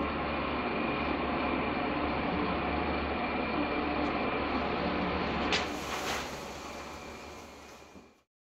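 Steady hum of room machinery with a faint high tone running through it, broken about five and a half seconds in by a brief sharp crackle; the sound then fades out toward the end.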